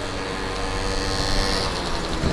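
A steady engine drone, one unchanging pitched hum over a rushing noise.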